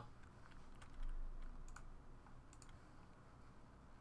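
Faint, scattered clicks of computer keyboard keys, with a low hum that comes in about a second in.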